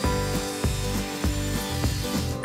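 Kobalt miter saw blade cutting through a hollow white stair railing, a steady cutting noise, under background music.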